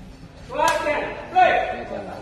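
Men's voices calling out in a large reverberant hall during a sepak takraw game, with a single sharp smack a little over half a second in.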